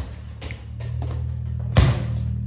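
Background music with a steady low bass line, broken by two thuds of small rubber balls on a concrete garage floor: a short one at the start and a louder one near the end.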